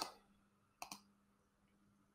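A computer mouse click, heard as two quick ticks close together about a second in, against near silence.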